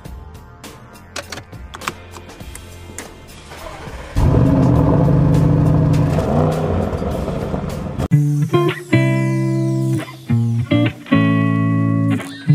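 Audi RS6 Avant Performance's twin-turbo V8 starting about four seconds in, loud at first and easing off over the next few seconds. Electric guitar music comes in loudly about two-thirds of the way through.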